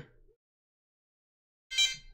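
Near silence, then a short high-pitched tone about two seconds in, lasting under half a second.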